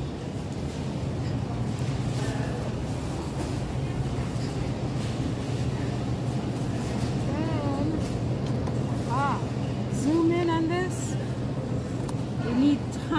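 Steady low hum of a supermarket's refrigerated produce cases under a constant background noise. Indistinct voices talk briefly in the second half.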